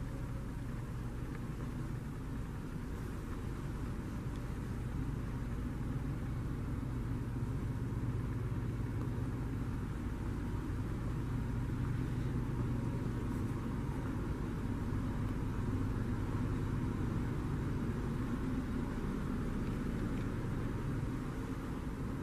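Steady low rumble with a faint hum, like distant traffic or building machinery, running evenly without any distinct events.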